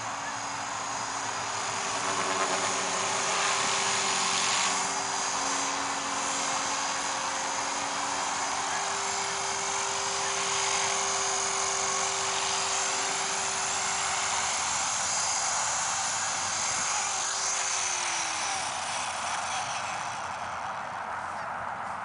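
Align T-Rex 450 electric RC helicopter's motor and rotor whining steadily in flight, with a hiss of rotor wash. Near the end the whine drops in pitch as the rotor slows down.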